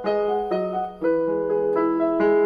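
Digital keyboard with a piano voice playing a slow melody over held chords; the sound dips briefly just before a second in, then a new chord is struck.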